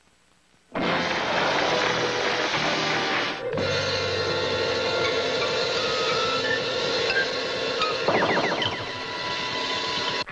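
Cartoon soundtrack music, starting suddenly about a second in. A held, wavering tone joins at about three and a half seconds, and a run of quick rising swoops comes near the end, as sound effects for a cartoon house splitting in two.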